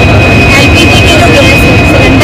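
A woman talking over a very loud, steady, low rumbling noise with a constant thin high whine running through it.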